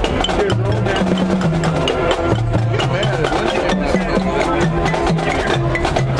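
Marching band playing: brass holding low notes that move in steps every half second or so, over a steady drumline beat.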